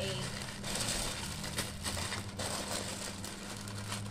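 Plastic snack packaging and a plastic carrier bag rustling and crinkling as they are handled, over a steady low hum.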